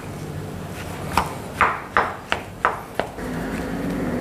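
Silicone spatula stirring a thick mashed-potato mixture in a glass bowl, its strokes knocking against the glass six times in quick succession over the second half.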